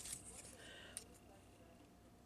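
Near silence, with faint handling of a plastic action figure: a few soft ticks and a small click about a second in as a part is swung into place.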